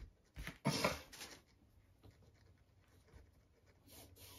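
Shoelace and sneaker fabric rustling as the lace is pulled through the shoe's eyelets, a few short rustles in the first second and a half, then faint handling noise.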